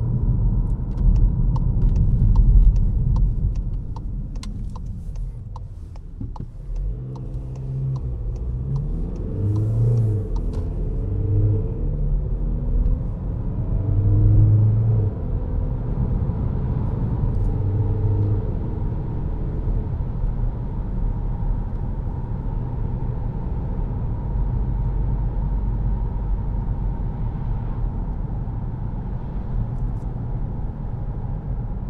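Cabin sound of a Škoda Karoq 2.0 TDI four-cylinder diesel SUV being driven: steady low rumble of engine and road. A run of light clicks comes in the first few seconds, the engine note rises and changes pitch several times in the middle, and then it settles into steady cruising road noise.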